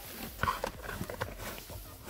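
Handling noise from a digital multimeter being picked up and moved on a workbench: a few light, irregular knocks and clicks of hard plastic, the clearest about half a second in.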